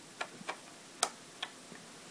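Four short, sharp clicks, unevenly spaced, the third the loudest: switches on a Neutrino Wand prop toy being flipped to power it up.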